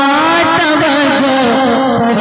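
Solo male voice singing a naat into a microphone, amplified through a PA, holding long notes that glide and bend in pitch.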